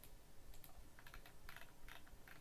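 A few faint, irregular clicks and light taps in near silence, typical of a computer keyboard or mouse being worked while a document is scrolled.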